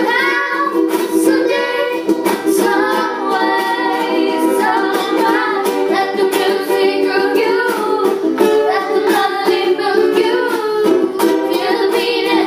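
Three ukuleles strummed together in a steady rhythm while young girls sing a melody in unison over them.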